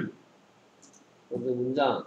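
Speech: a voice saying the English word 'soil' in a Korean-language lesson. In the short pause before it there is a faint computer mouse click.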